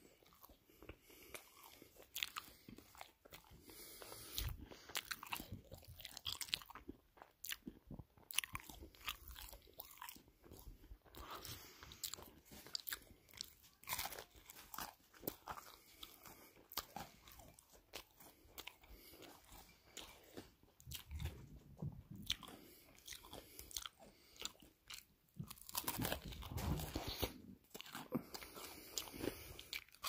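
Close-miked chewing and crunching of crispy pizza, with irregular crackling bites and chews that grow a little louder about four seconds before the end.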